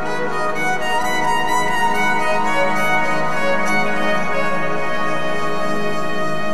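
Live chillout music: a violin playing long, sustained notes over a steady electronic backing.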